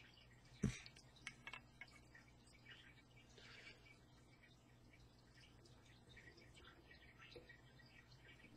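Near silence with faint handling noises from fingers working fly-tying materials at the vise: one soft tap just under a second in, then a few small ticks and a brief faint rustle, over a low steady hum.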